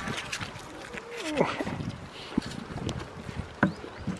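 Goat kids biting into and chewing a hand-held apple: a run of crisp crunches and snaps, with one louder snap near the end. A short falling call cuts in about a second in.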